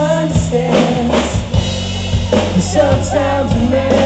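Live pop-rock band playing loud: a male lead vocal sings over electric guitar, bass and a drum kit, with regular drum hits.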